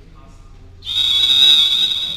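Referee's whistle: one long, loud, steady high blast starting a little under a second in, typical of a volleyball referee calling the end of a timeout.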